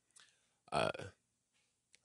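A man's short throaty hesitation sound, 'uh', about three-quarters of a second in, with a faint click just before it; otherwise near silence.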